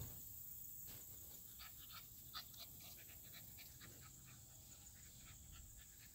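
An American Bully puppy panting faintly, a string of short quick breaths that is densest about two seconds in.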